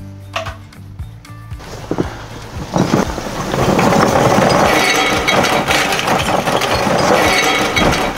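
Charcoal being poured from a bag into the Kamado Joe's ceramic firebox. It starts about three seconds in as a dense, loud clatter of pieces clinking against one another and the ceramic, over background music.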